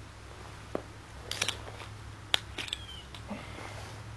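Handling noise of a 40 oz glass malt liquor bottle and a winter jacket: a few scattered sharp clicks and light rustles, with one brief thin squeak near the end.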